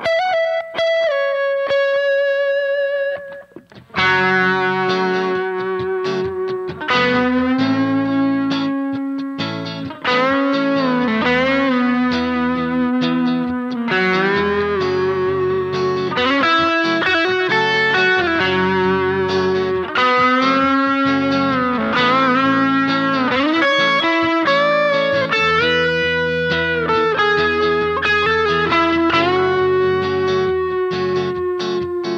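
Schecter electric guitar playing a lead solo full of string bends and vibrato, opening on a single held, wavering note. From about four seconds in, sustained chords enter beneath the lead and change every couple of seconds.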